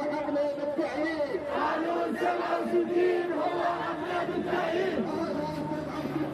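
A crowd of demonstrators shouting together, many raised voices overlapping.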